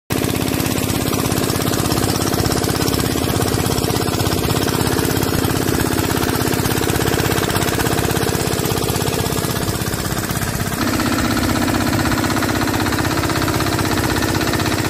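Small single-cylinder Comet diesel engine running steadily with a fast, even thudding beat. It drives the sprayer's blower fan and pump, whose air rushes out as a hiss. The tone shifts slightly about eleven seconds in.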